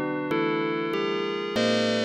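Ambient electronic music of sustained keyboard tones, with a new note struck about every half second and each one slowly fading.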